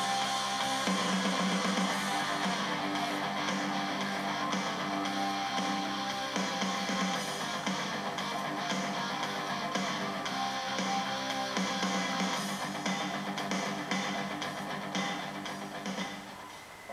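Background music led by guitar, playing steadily and fading down near the end.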